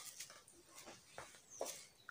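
Faint rustling of cloth and plastic as a velvet garment is unfolded and spread out by hand, in a few short rustles.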